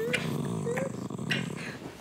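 Small dog growling: one low, drawn-out growl that eases off near the end.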